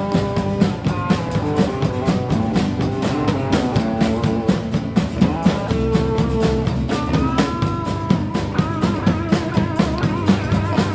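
A live band playing a rock/country song with no vocals: guitar and a drum kit keeping a steady beat, with a held lead note that slides up about seven seconds in.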